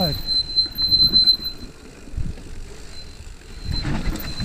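Mountain bike hydraulic disc brakes squealing, a high steady whine for the first second and a half and again briefly near the end, over the rumble of tyres on a dirt trail. The rider takes it for worn or contaminated discs and pads: cleaning them with benzine has not cured it, and he thinks they need replacing.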